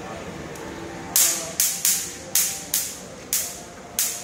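Electric mosquito-swatter racket zapping insects: about seven sharp, hissing crackles that each die away quickly, starting about a second in and coming at irregular intervals.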